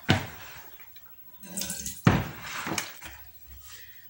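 Water sloshing and dripping in a plastic basin of thawed pork chops at a kitchen sink as they are handled. There is a sharp knock at the start and a louder one about two seconds in.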